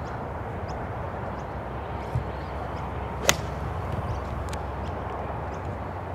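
A 51-degree gap wedge striking a golf ball: one sharp, very short crack about three seconds in.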